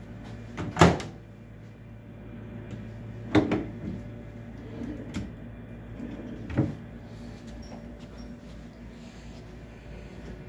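A microwave oven door swung shut with a sharp clunk about a second in, followed by several softer knocks as the wooden cabinet drawers beneath it are pulled open and pushed shut.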